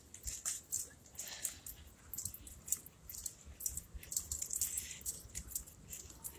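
Quiet outdoor background with a faint low rumble and scattered light clicks and rattles, typical of a phone being carried by someone walking.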